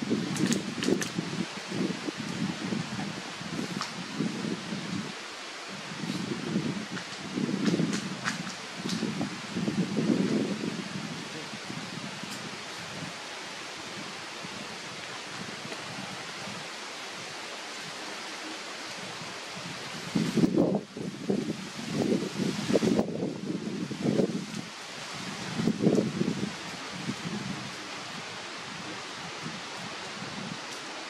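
Outdoor ambience: dry leaves rustling with a few short clicks, and low, muffled voices coming and going in bursts through the first ten seconds and again from about twenty seconds in, with a brief rise in hiss in the middle of that second stretch.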